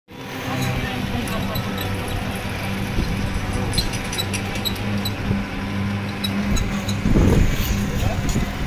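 A motor vehicle's engine running steadily, a low even hum, with a louder surge of noise about seven seconds in.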